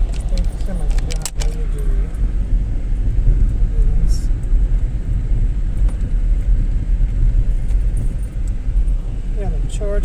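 Steady low rumble of a car driving slowly over a rough gravel road, heard from inside the cabin, with a few sharp rattles about a second in. Faint voices come and go over it.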